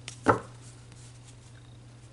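A single knock about a third of a second in as tarot cards are tapped down on the table, followed by faint card handling over a steady low hum.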